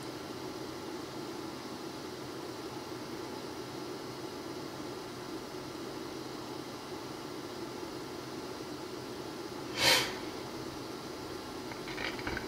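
Steady low room hum and hiss, with one short breath noise close to the microphone about ten seconds in.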